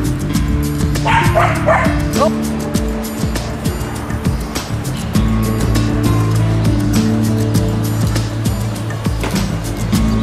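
Puppies yipping and barking briefly, about one to two seconds in, over steady background music that continues throughout.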